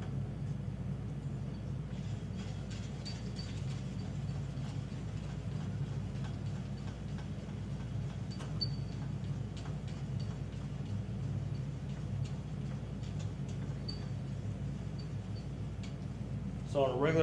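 Steady low room hum with faint, scattered light clicks.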